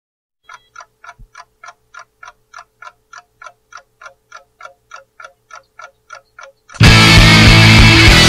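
A clock ticking evenly, about three ticks a second, as the intro to a rock song. Near the end a rock band comes in suddenly and loud, with electric guitars and drums.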